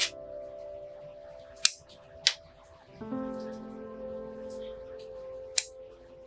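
Bonsai scissors snipping zelkova twigs: four sharp snips at uneven spacing, the loudest near two seconds in. Background music with sustained notes plays underneath.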